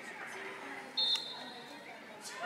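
A single short, shrill referee's whistle blast about a second in, over a background of crowd chatter.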